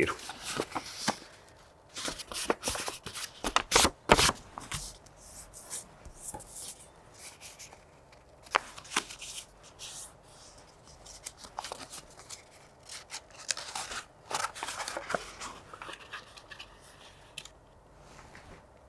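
Filter paper being folded and creased by hand and pressed into a plastic funnel: irregular paper crinkling and rustling with a few sharp clicks.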